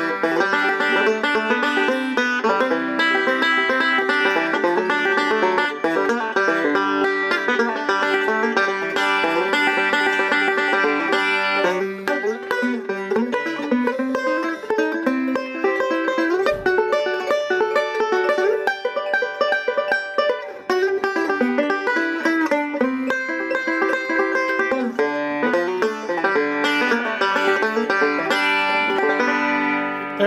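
Gold Tone OB-3 five-string banjo with a mahogany resonator, fingerpicked with picks in a continuous run of quick plucked notes.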